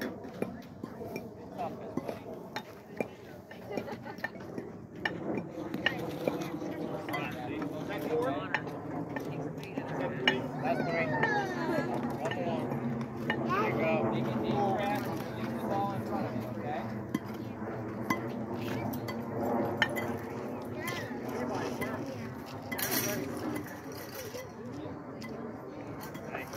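Background chatter of several people's voices overlapping, none of it clear, with a few scattered short clicks and knocks.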